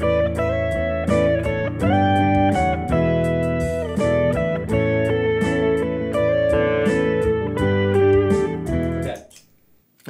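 Electric guitar playing a single-note harmony line over sustained lower notes, with a few notes sliding up in pitch; it is a harmony part built from the chord tones left out of the melody. The playing stops about nine seconds in.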